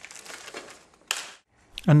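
Backing paper being peeled off the butyl adhesive of a Sandtoft KoraFlex flashing: a faint, crackly tearing, then a short louder rip about a second in.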